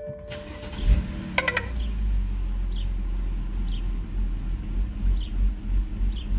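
BMW N52 straight-six cranking and firing up about a second in, then settling into a steady idle near 1000 rpm. The owner is chasing a rough idle on this engine.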